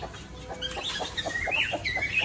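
A domestic chicken clucking in short, quiet notes, with a few brief high chirps near the end.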